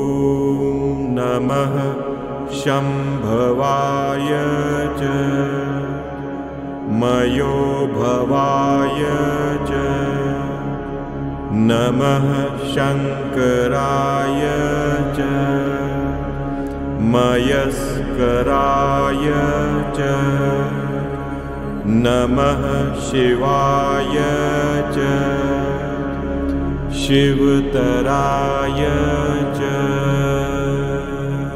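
Hindu devotional mantra to Shiva chanted to music over a steady low drone, in long held phrases that begin about every four to five seconds.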